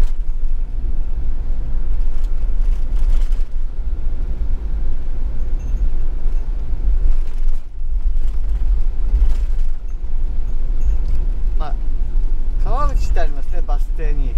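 Steady low road and engine rumble inside the cabin of a moving camping car.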